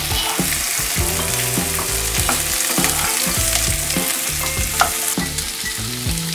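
Diced vegetables (potato, carrot, pumpkin) sizzling in oil in a non-stick kadai, with a steady hiss of frying and short scrapes as they are stirred.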